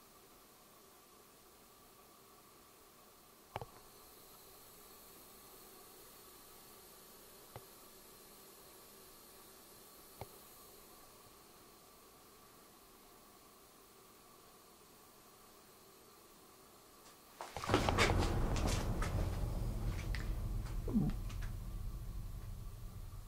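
A quiet room with three faint clicks, then about three-quarters of the way through a loud stretch of close rustling and scuffing with a low handling rumble.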